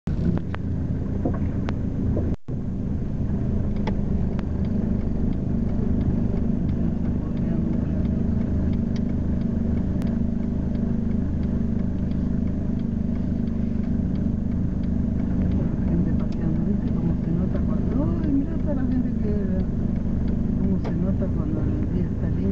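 Cabin noise of a car driving through city traffic: a steady low engine and road hum, with faint voices toward the end.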